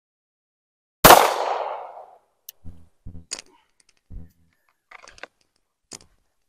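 A single 9 mm pistol shot from a Glock 19 firing a Federal Hydra-Shok hollow point, about a second in, with an echo that fades over about a second. A few faint knocks follow.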